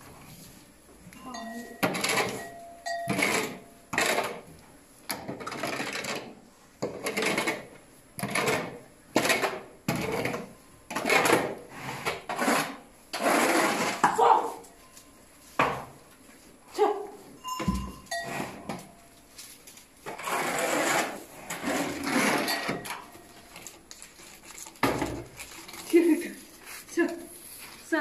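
Shovel blade scraping a concrete stall floor in repeated strokes, roughly one a second, as a cattle pen is cleaned out.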